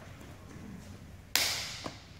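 A sudden sharp smack about a second and a half in, trailing off in a short hiss, followed by a fainter click.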